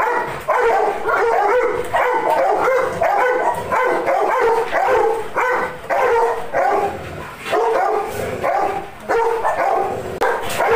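Chocolate Labrador retriever barking in rapid, almost unbroken runs of short barks and yelps, with only brief pauses.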